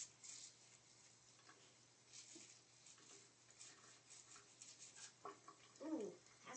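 Faint, irregular scratching of a nail brush's bristles scrubbing under the fingernails, in short strokes.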